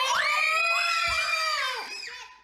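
A child's long, high-pitched scream of fright at a bug that has come toward them, held for about two seconds and dropping away near the end. A dull low thump sounds about a second in.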